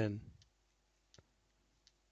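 The end of a spoken word, then near silence broken by three faint clicks, evenly spaced about two-thirds of a second apart.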